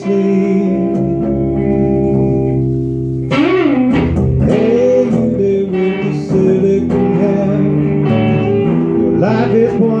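A small rock band of guitars and bass guitar plays an instrumental passage between sung lines. Held chords ring for about three seconds, then a lead line with bending, sliding notes comes in over the rhythm.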